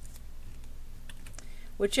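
A few faint, sharp computer mouse clicks over a low steady hum, with a voice starting near the end.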